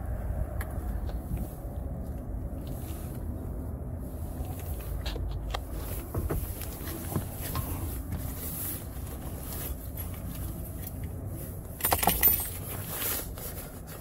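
Handling noise, footsteps and scattered light clicks from someone moving to a pickup and into its cab, over a steady low rumble. A louder scuffing burst comes about twelve seconds in.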